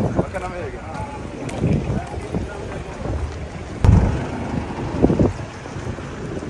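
Wind buffeting the microphone as a low rumble, with a strong gust about four seconds in, over street traffic and brief snatches of voices.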